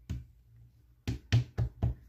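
Hands pressing and patting a crochet baby shoe against a tabletop while its glued strap sets: one knock just after the start, then four sharp knocks about a quarter second apart in the second half.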